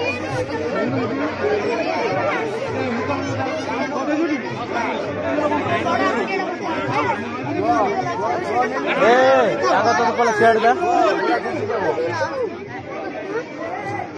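Crowd chatter: many voices talking over one another, louder for a few seconds past the middle.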